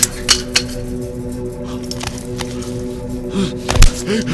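Film background score: a sustained drone of steady held tones, with scattered sharp clicks and clinks and a couple of heavy low thumps near the end.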